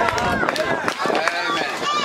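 Speech: a man talking over a microphone.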